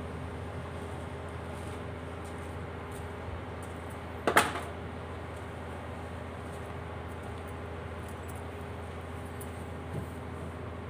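A steady low hum, with one sharp clank about four seconds in as a tool knocks against the bare engine's metal.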